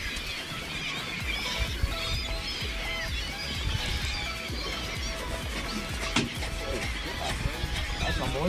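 A large flock of gulls calling over the water, many short wavering cries overlapping, over a steady low wind rumble.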